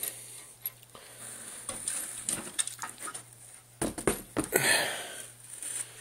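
Light clicks and small rattles of hands handling a 3D printer frame built from threaded rod, smooth steel rods, nuts and bearings, with a quick cluster of clicks about four seconds in followed by a short rubbing noise. A low steady hum runs underneath.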